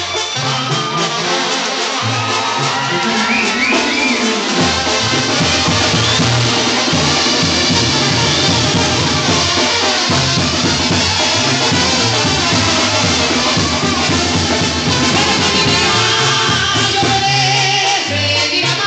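Live band music with a singer, loud and recorded from beside the stage, with drums and a crowd. The bass and drums drop away for the first few seconds, and the full band comes back in about four and a half seconds in.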